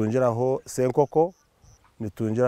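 A man speaking in short phrases, pausing near the end.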